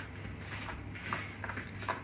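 Hands tossing and pressing a marinade-coated chicken piece in a bowl of flour: faint soft rustling and patting, a few light touches.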